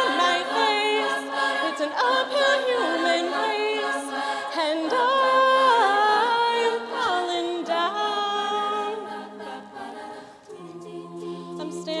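Women's a cappella group singing in close harmony: stacked sustained chords with voices gliding between notes, no instruments. The singing eases to a quieter passage about ten seconds in.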